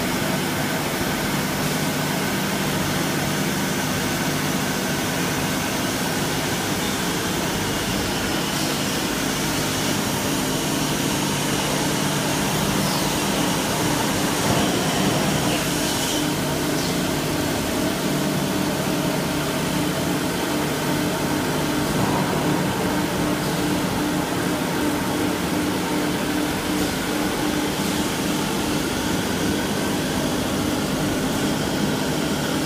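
Electric motors and a centrifugal blower of an EPS wall-panel production line running steadily: a continuous machine drone with a few constant low tones.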